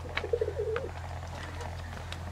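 A dove cooing once, briefly, in the first second, over a steady low hum.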